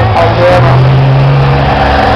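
Race trucks' diesel engines running hard on the dirt circuit: a loud, deep, steady engine note.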